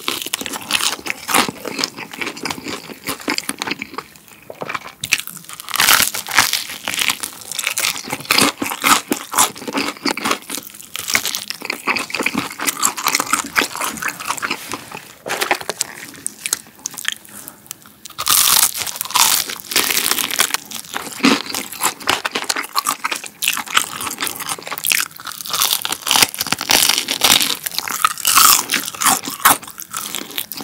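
Close-miked biting and chewing of crispy fried chicken coated in seasoning powder, with repeated crackling crunches and brief pauses between bites.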